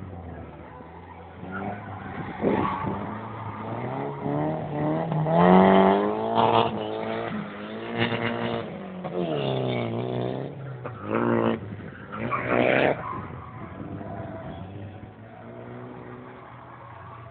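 Toyota Soarer drift car's engine revving hard in repeated rising and falling surges through a drift run, with tyre squeal. It is loudest about a third of the way in and again shortly before it dies away near the end.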